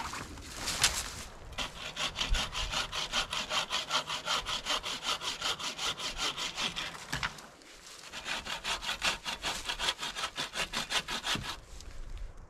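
Hand bucksaw with a Bahco dry-wood blade cutting through a dead branch in quick, even push-and-pull strokes, each one a dry rasp. There is a short pause in the strokes partway through, and a brief noise before the sawing starts.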